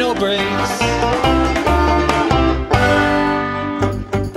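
Fast folk-rock instrumental passage led by picked banjo over a pulsing bass line, with no singing.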